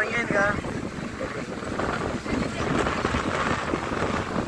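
Wind buffeting the microphone outdoors, a steady rumbling rush, with a voice trailing off in the first half second and faint voices behind.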